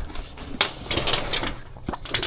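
A folding fabric-covered solar panel being handled and folded shut: rustling and rubbing of its nylon cover, with a sharp knock about half a second in and another near the end.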